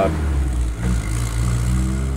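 Datsun A14 1.4-litre four-cylinder engine of a 1968 Datsun 520 pickup running steadily, with a brief dip in level about a second in.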